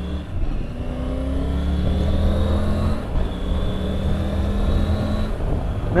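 Triumph Tiger 850 Sport's 888cc three-cylinder engine pulling hard under acceleration, rising in pitch, with a drop about halfway through as a gear is changed with the clutch (no quickshifter), then rising again before easing off near the end. Wind noise runs underneath.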